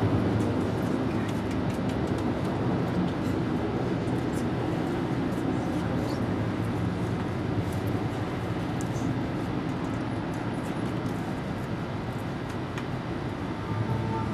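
Steady low rumble of outdoor city background noise, with no distinct events.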